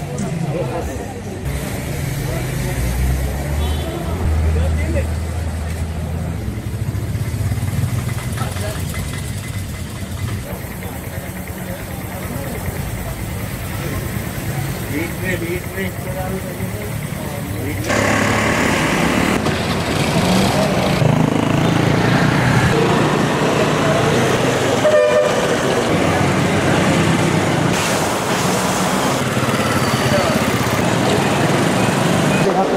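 Street hubbub: a crowd of people talking among themselves amid traffic, with vehicle engines running and a brief horn toot. The hubbub grows louder a little over halfway through.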